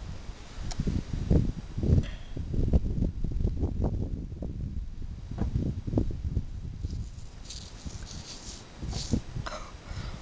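Low thumps and rustling from a hand-held camera being handled as the finder crouches, then short scratchy bursts of fingers working in gravelly soil to free a red stone arrowhead near the end.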